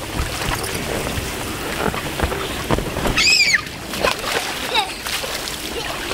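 Water splashing and sloshing in the shallow pool of an inflatable water slide as children wade through it, with a child's brief high-pitched squeal about three seconds in.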